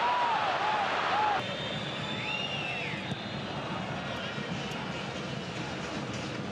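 Football stadium crowd noise. Loud chanting for about the first second and a half, then a sudden drop to quieter crowd noise with a brief high rising-and-falling tone soon after.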